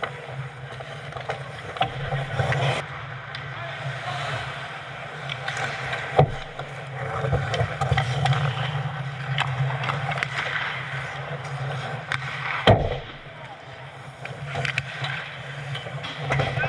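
Ice hockey play around the goal: skate blades scraping and cutting on the ice with sticks clicking and clattering, over a steady low hum. Two loud sharp knocks stand out, about six seconds in and again near thirteen seconds, from puck or stick impacts.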